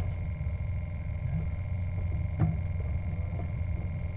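Steady low engine rumble with a thin, steady high whine over it, and a short knock about two and a half seconds in.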